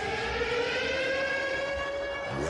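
A siren-like electronic tone, held and rising slowly and slightly in pitch, with no beat or voice over it.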